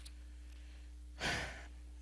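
A man's single breathy exhale, a sigh into the microphone, a little past a second in and lasting under half a second, over a steady low hum.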